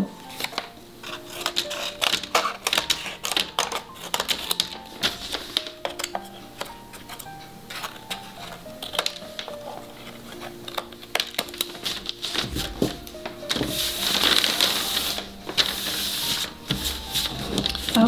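Scissors snipping through paper strips in a run of quick, irregular cuts, over soft background music with held notes. Near the end comes a brief burst of paper rustling.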